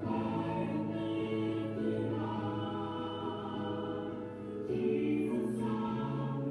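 A small group of voices singing a slow contemporary worship song in long held notes, with the pitch changing every second or so.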